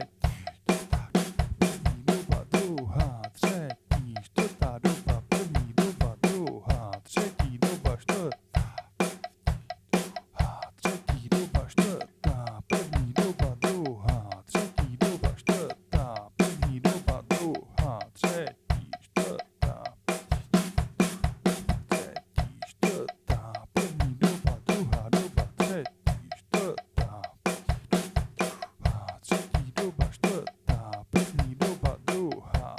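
Acoustic drum kit played in a steady, even stream of sixteenth-note strokes on the snare and toms, with the bass drum under the hands: a hand-and-foot coordination exercise.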